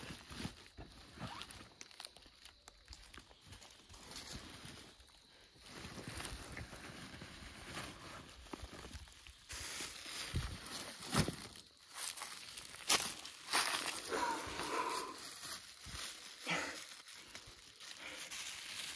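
Rummaging in a backpack: irregular rustling and crinkling of the bag's fabric and contents, with scattered small clicks and knocks, getting louder and busier about halfway through.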